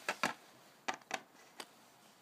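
About five short, sharp clicks and taps of small plastic toy pieces being handled close to the microphone: two at the start and three more over the next second and a half.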